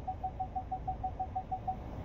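A Ford Ranger's rear parking-sensor chime beeping rapidly, about seven short beeps a second at one pitch, over the low idle of the truck. The fast rate means the truck is reversing very close to the trailer hitch behind it.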